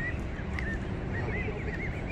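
Canada goose goslings peeping: short, high, arched calls, a few in the first second and more in quick succession near the end, over a steady low rush of turbulent water.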